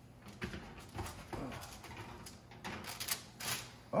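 An oven being opened and a metal baking sheet pulled out on the oven rack: a string of light knocks, clunks and scrapes of metal on metal.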